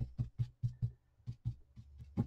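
Small paintbrush loaded with gold paint stroked back and forth on a paper napkin on a tabletop to wipe off the excess before dry brushing: a quick run of short brush strokes, about four or five a second, with a brief pause about halfway. A low steady hum sits underneath.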